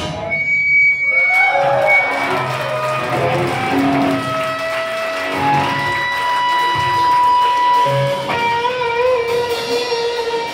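Live rock band: the drums drop out at the start, leaving electric guitars ringing with held, bending notes over a low bass line. About eight seconds in, the guitars move to a new held chord that wavers.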